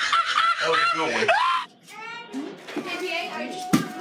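People's voices and laughter with no clear words. The sound drops off abruptly about 1.7 s in, then fainter voices return.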